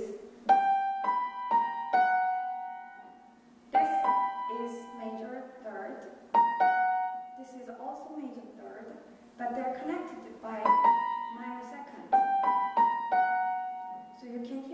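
Steinway grand piano playing short groups of a few high notes, five times with pauses between, each note ringing on: a motif of two major thirds joined by minor seconds.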